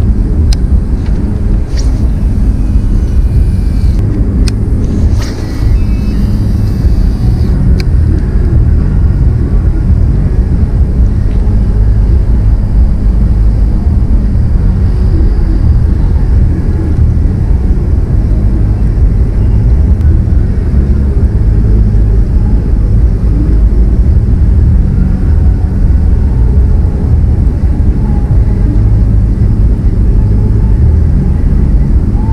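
Wind buffeting the microphone, a loud, steady low rumble throughout. In the first several seconds it is overlaid by a few sharp clicks and rattles from handling a baitcasting reel.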